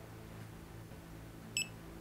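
Critical wireless tattoo battery pack giving a single short, high beep about one and a half seconds in as it powers off after a long press of its button.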